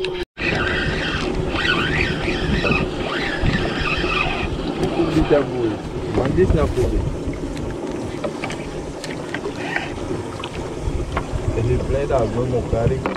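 Wind buffeting the microphone over open water from a small boat, with voices talking in the background for the first few seconds. There is a brief dropout just after the start.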